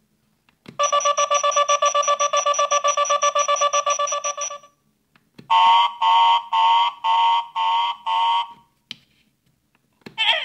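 Electronic alarm sound effect from the speaker of a Minions Mega Transformation Chamber toy, set off by a button click. A rapidly pulsing siren-like tone lasts about four seconds, then six evenly spaced beeps follow.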